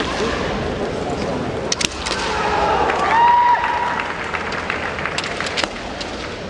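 Kendo bout: sharp clacks of bamboo shinai knocking together, a pair about two seconds in and a quick cluster near the end, with a fencer's drawn-out, high kiai shout in the middle as the loudest sound.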